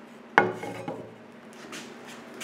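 A single knock about a third of a second in that fades over about half a second, followed by faint rubbing and handling noise.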